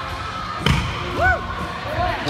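Stunt scooter landing on a wooden ramp: one sharp thump about two-thirds of a second in.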